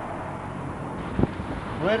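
Steady outdoor background noise, a low rumble and hiss, with a single sharp click about a second in; a voice starts just before the end.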